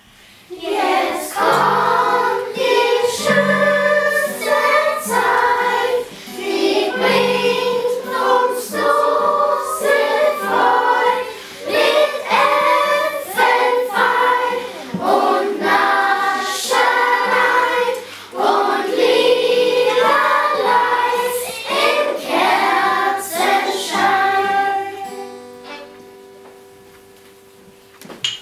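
Children singing a Christmas song together, accompanied by wooden xylophones struck with mallets. The music starts about half a second in and dies away near the end.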